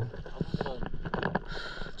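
A stand-up paddleboard paddle pulled through the water in a stroke, with soft irregular splashing and water lapping.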